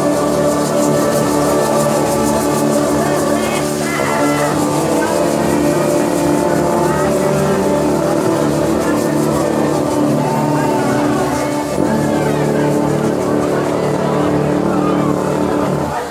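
Marching brass band of trombones, trumpets and tubas playing together, holding long sustained chords at a loud, steady level.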